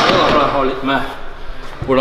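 Speech only: a man talking, with no other distinct sound.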